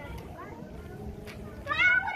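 A cat meowing: one loud, drawn-out call that starts near the end and rises in pitch.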